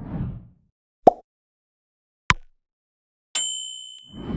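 Animated end-screen sound effects: a short soft whoosh, then two sharp clicks a little over a second apart, then a bright notification-bell ding that rings on near the end.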